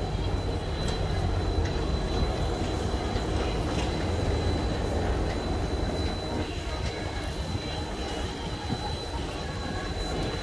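Chairlift terminal running, with chairs moving through the station: a steady low mechanical rumble with a faint steady high whine and a few light clicks.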